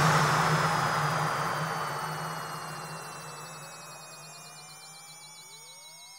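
The closing hit of an electronic DJ remix dying away: a long wash of noise fading steadily over a low drone, with synth tones sliding down in pitch and a few sliding up toward the end.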